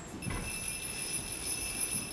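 Jingling bells, like sleigh bells, start ringing suddenly about a quarter second in and keep going steadily, with a low thump as they begin.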